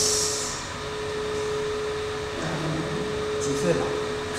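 Brief, scattered speech over a steady, even tone that runs throughout.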